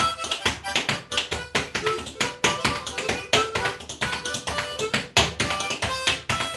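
Freestyle step dancing (flatfooting), feet striking the floor in quick, irregular percussive taps several times a second, over a harmonica playing a tune.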